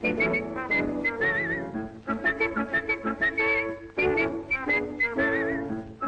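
A jaunty tune whistled by a cartoon character over an orchestral soundtrack, early 1930s animation style, with a warbling trill twice.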